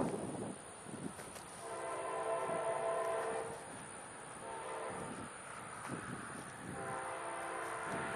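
Distant diesel locomotive horn of an approaching CSX freight train sounding a multi-note chord: a long blast of nearly two seconds, a faint short blast, then another long blast near the end. This is the horn warning given for a grade crossing.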